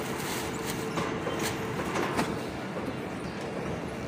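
Automated flatbread production line running: a steady machine noise with several sharp clacks from the slatted metal conveyor.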